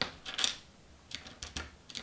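A few light, irregular clicks and taps of small resin model parts being handled and shifted against each other on a cutting mat, with a quieter gap near the middle.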